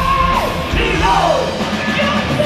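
Heavy metal band playing live, heard from among the audience: drums, distorted guitars and bass, with a high held note that breaks off and drops about half a second in, followed by a falling slide.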